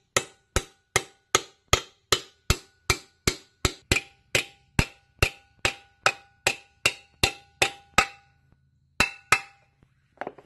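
Hammer striking a small engine's steel muffler held on a rubber floor mat, denting part of it in so it clears the blower housing: a steady run of sharp blows at about two and a half a second, each with a short metallic ring. It pauses about eight seconds in, then two more blows follow.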